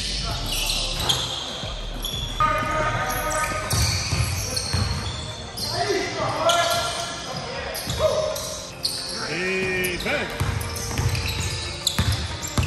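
A basketball bouncing on a hardwood gym floor during a pickup game, with sneaker squeaks and players' shouts, echoing in a large gym.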